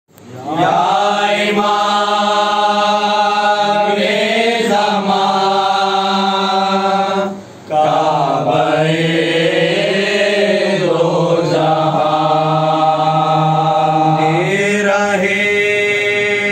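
A group of men chanting a Shia noha (lament) in unison, unaccompanied, in long, held, gliding notes, with a brief break for breath about seven and a half seconds in.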